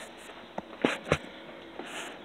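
A few short light knocks and clicks, three within about half a second near the middle, over faint background noise: handling noise from a handheld camera being moved about.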